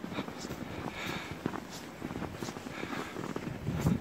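Footsteps crunching through deep snow at an uneven walking pace, with a louder step near the end.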